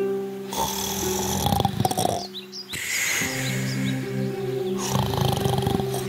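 Cartoon sound effect of the wolf snoring: two long snores with a short break between them, over steady background music.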